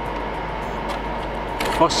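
Steady whirring background hum with a faint constant high tone, while a plastic clamshell CPU case is handled; a spoken word near the end.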